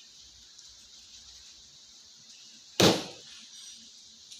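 A single loud knock, a hard impact about three seconds in that dies away quickly, over a faint steady hiss.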